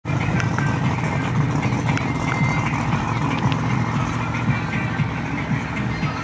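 Steady low rumble of car engines, with faint voices and a few light clicks over it.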